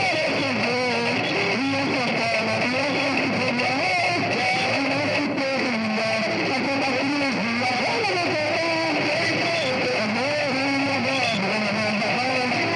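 Live music: guitar with a wavering melody line, at a steady level throughout.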